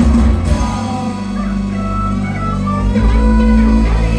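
Live band playing an instrumental passage without vocals: a steady bass line with drums and keyboards, and a higher melodic line over them.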